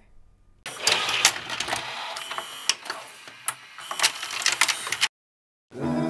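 A loud, noisy clattering sound effect full of irregular sharp clicks, starting about half a second in and cutting off abruptly near the end. Music begins just before the end.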